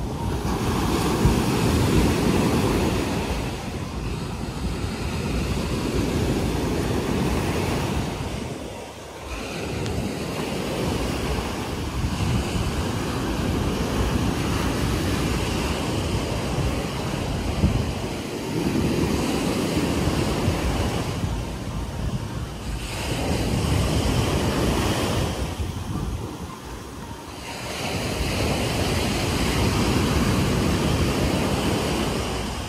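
Pacific Ocean surf breaking and washing up on a sandy beach, a continuous rush that eases briefly a few times between waves.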